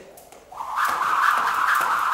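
Thin-cabled speed rope whirring fast through the air during a run of double-unders, with light ticks as it strikes the concrete floor.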